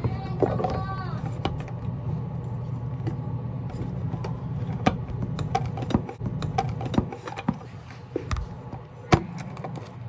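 Handling noise from a phone camera being propped up and adjusted: scattered short clicks and knocks over a steady low hum.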